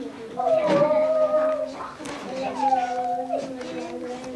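A child's high voice holding two long sung or crooned notes, the second sliding down before it settles, over a steady low background tone.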